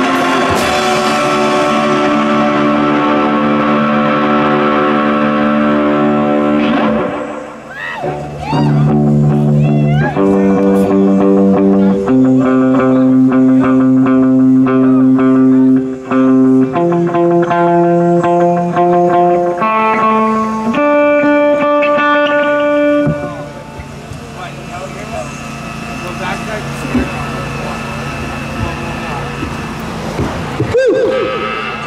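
Distorted electric guitar through an amplifier, playing long sustained notes that step slowly from pitch to pitch. About 23 seconds in the playing stops and a quieter steady ringing remains from the amplifiers, which the players take for feedback.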